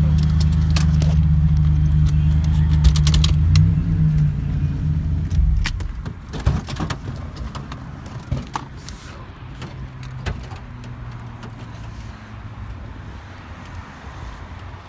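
Buick Grand National's turbocharged 3.8 L V6 idling steadily, then winding down and shutting off about five seconds in. A run of sharp clicks and knocks follows, with keys jangling.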